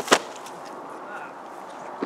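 A water-filled plastic bottle, knocked off its post by a sword stroke and only partly cut, hitting the grass: two sharp knocks in quick succession at the very start, then quiet outdoor background.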